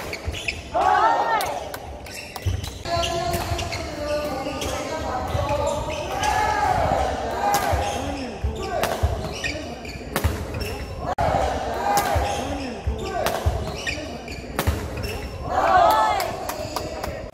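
Badminton rally on a wooden sports-hall court: repeated sharp racket-on-shuttlecock hits and footfalls, with short rising-and-falling shoe squeaks on the floor, echoing in the large hall.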